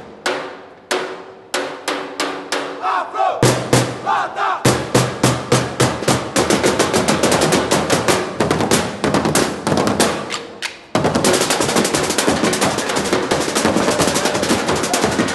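Percussion drum line of stick-played drums striking in unison. Separate accented hits with ringing tails come about twice a second, with shouts between them about three to four seconds in. The strokes then speed up into dense rhythmic patterns, stop briefly near eleven seconds, and resume as a very fast continuous run of hits.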